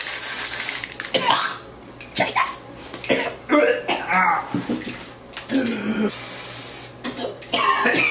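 Aerosol can of temporary blue hair-colour spray hissing in a steady burst that stops about a second in, followed by coughs and short vocal noises. A second, shorter spray burst hisses a little past the middle.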